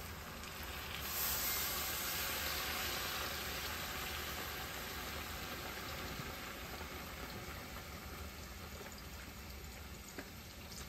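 Chicken broth poured from a carton into a hot pot of browned sausage, chicken and rice, sizzling as it hits. The hiss swells about a second in and slowly eases as the pour goes on.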